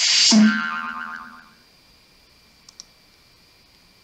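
Cartoon "boing" sound effect: a sudden springy twang with a wobbling pitch that fades out over about a second and a half. Two faint clicks follow near the end.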